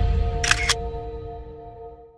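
Camera shutter sound effect: two quick clicks about half a second in, over a low musical chord that fades away.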